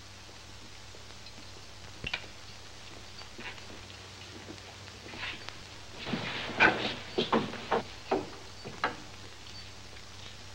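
A jail cell's barred iron door being unlocked and opened: a run of sharp metallic clicks and clanks about six seconds in, after a faint double click about two seconds in, over a steady hiss.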